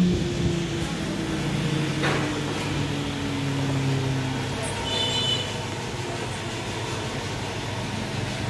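Electric spindle of a CNC wood router winding down after a carving job: a machine hum that falls slowly and steadily in pitch. There is a single sharp knock about two seconds in.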